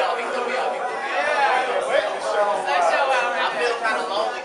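Indistinct chatter: people's voices talking over one another, no words clear.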